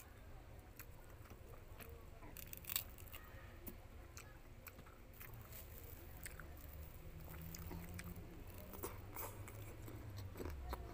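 Rambutan rind torn open by fingers, giving soft crackles and small snaps, then in the second half the peeled fruit is bitten and chewed.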